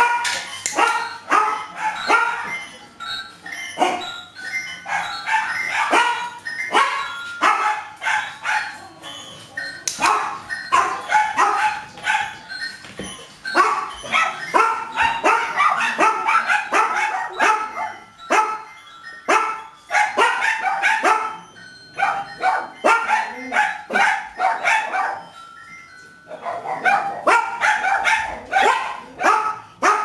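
Small dog barking repeatedly in rapid runs of short barks, with a brief pause near the end.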